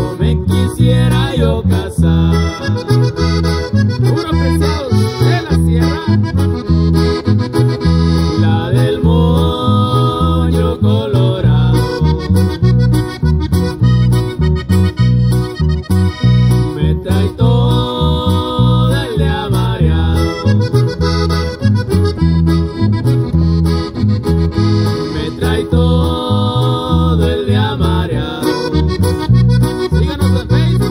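Instrumental break of a cumbia played live: an accordion carries the melody over strummed acoustic guitar and an electric bass keeping a steady, bouncing beat.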